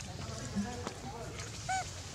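Young macaque calls: a couple of faint, short, arched coos about halfway through and a clearer one near the end, over a steady low hum.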